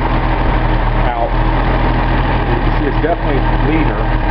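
Datsun L28 fuel-injected straight-six running at a steady idle with the oil dipstick pulled out, so it draws unmetered air through the crankcase and runs a little lean.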